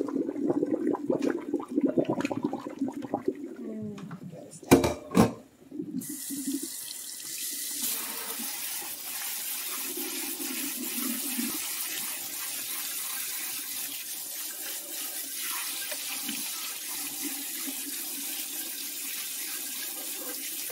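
Hot water from the pot draining through a mesh strainer into a stainless steel sink, then two sharp clanks as the saucepan is set down in the sink. After that a kitchen faucet runs steadily, rinsing the cooked ramen noodles in the strainer with cold water.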